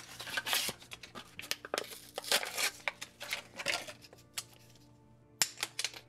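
Paper-and-plastic blister pouch crinkling and tearing as a dual-barrel epoxy syringe is pulled out of it, dense for about four seconds, then a few sharp plastic clicks as the syringe is handled.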